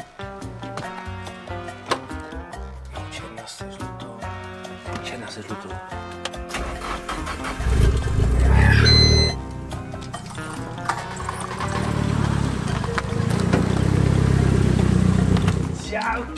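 Background music with a steady beat. About halfway, a car engine starts with a short rising rev, then runs with a loud low rumble over the music through the last few seconds.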